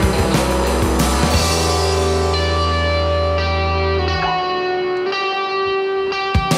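Live rock band playing electric guitar, bass and drums. The drums stop about a second in, leaving sustained guitar chords over a held bass note. The bass cuts out about four seconds in and the guitar rings on alone.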